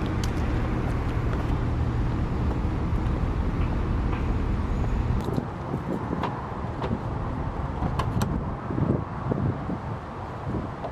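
Steady low outdoor rumble, strongest in the first half and dropping abruptly about halfway through, then a few sharp clicks as a car door is unlatched and swung open near the end.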